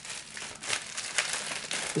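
Plastic packaging crinkling as it is handled, in an irregular run of small crackles.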